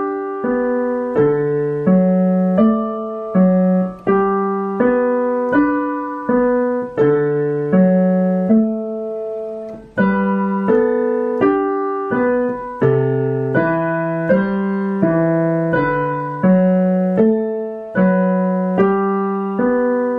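Digital piano playing a simple beginner's piece in G in 4/4: a right-hand melody over left-hand broken chords, with a short break about halfway through.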